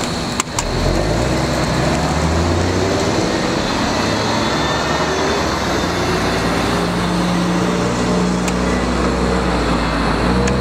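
A motor vehicle's engine running nearby, a steady low hum whose pitch shifts in steps, with a sharp click about half a second in.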